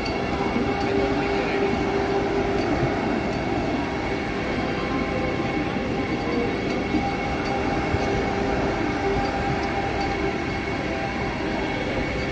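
Vande Bharat Express electric multiple-unit train rolling slowly past, a steady run of wheel and running noise with a few held, even tones over it.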